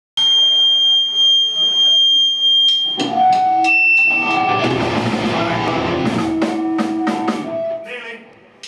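Live band of electric guitars, bass guitar and drum kit playing loud through amplifiers. A single held high tone sounds alone at first, then drums and guitars crash in about three seconds in and play on with steady drum hits.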